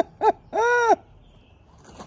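A woman's voice making silly hooting noises: two short calls, each rising and falling in pitch, then a longer one about half a second in.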